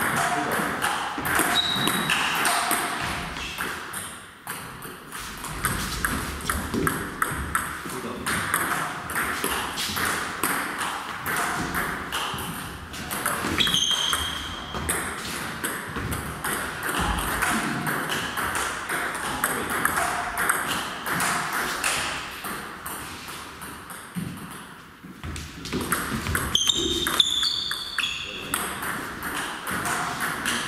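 Table tennis balls clicking off bats and tables in rallies, quick ticks in runs with short pauses between points, with a few short high squeaks here and there.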